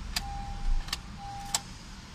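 Honda CR-Z hybrid being switched off from the driver's seat. Three sharp clicks come about two-thirds of a second apart, with a steady high beep sounding between the first and the last and breaking off briefly once, and a soft low thump between them.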